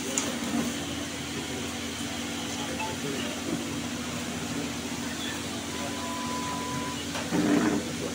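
Indistinct murmur of voices and room noise from a crowd of people gathered indoors. A steady tone lasting about a second sounds near the six-second mark, and a louder burst of voice comes near the end.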